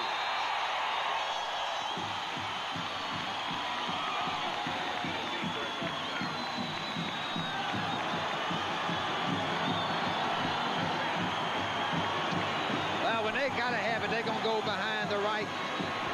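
Stadium crowd cheering a touchdown, a loud steady roar that holds throughout. From about two seconds in, a band's steady drumbeat plays under it, and a voice is heard faintly near the end.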